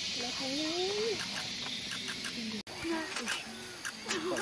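Steady high drone of forest insects, with a short rising pitched call about a second in and a few faint clicks. The sound cuts out abruptly for an instant near the end.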